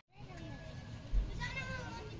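Children's high-pitched voices calling out in play, with a short low bump a little over a second in.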